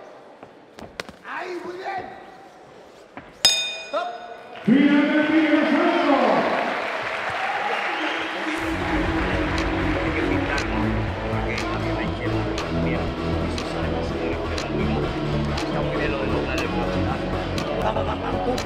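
Boxing ring bell struck twice in quick succession about three seconds in, with sharp, bright ringing, marking the end of a round. Loud music follows, with a steady beat coming in about halfway through.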